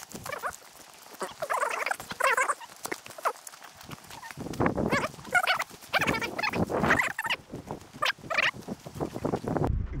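Repeated short, wavering animal calls heard over footsteps on a gravel path.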